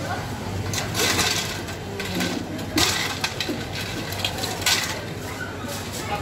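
Busy drink-counter background: a murmur of voices over a steady low machine hum, with several short hissing or rustling bursts and a few sharp clicks and knocks from drink preparation.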